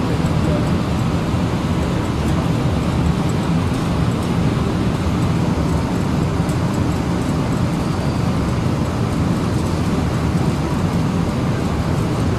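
Steady low rumbling background noise, even in level, with no speech.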